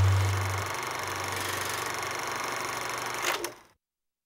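Sound effect of a TV channel's logo ident: a low, steady electronic hum under a hiss, loudest in the first second and then weaker. A sharp click comes near the end, and the sound cuts off suddenly.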